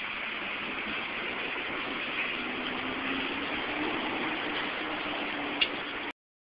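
City street traffic noise through a phone's microphone: a steady hiss, joined about two seconds in by a low steady engine hum, with one sharp click near the end.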